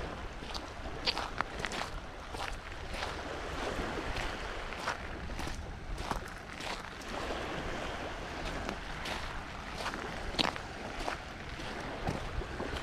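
Footsteps crunching on a pebble beach at a steady walking pace, about two steps a second, over small waves washing at the shoreline and a low rumble of wind on the microphone.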